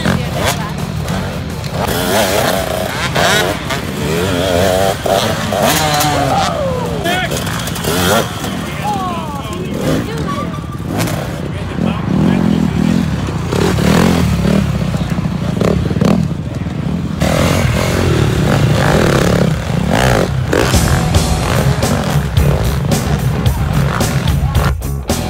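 Motocross dirt bike engines revving on the track, their pitch wavering and sliding up and down as riders work the throttle, with voices over the engine noise.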